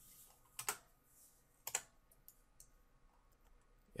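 A few sparse clicks at a computer keyboard and mouse: two small clusters about a second apart, then a couple of faint ticks, over near silence.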